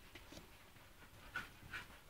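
Faint sounds from a mother dog and her puppies, with two short, sharp sounds about one and a half seconds in.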